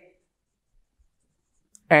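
Near silence between a man's spoken phrases, broken by a few faint ticks of a marker on a whiteboard as a word is written; speech resumes near the end.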